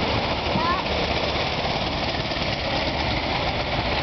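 Antique brass-era car's engine running as the car drives slowly past, a steady, rapid chugging mixed with road noise.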